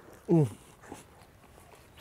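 A man's short pained "mm" moan, falling in pitch, as his mouth burns from a bite of a sausage made with Carolina Reaper chili.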